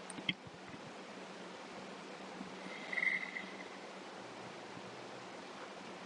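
Faint, steady background hiss of room tone. There is one short click just after the start and a brief, faint sound about three seconds in.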